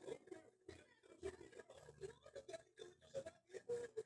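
Faint, indistinct voices talking in the background of a video call, too low to make out words.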